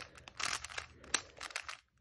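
Layers of a plastic 3x3 speed cube being turned by hand: a quiet run of quick clicks and rustles, with one sharper click about halfway through.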